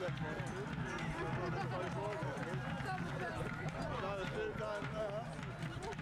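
Several voices calling and laughing over one another, with no clear words; laughter near the end.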